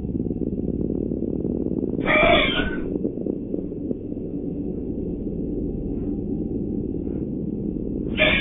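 A horse giving one short, harsh panicked cry about two seconds in, over a steady low hum of stable CCTV audio.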